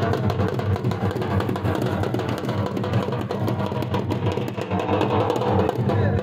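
Dhol, the large double-headed barrel drum, beaten at a steady driving rhythm for the Pashtun attan dance.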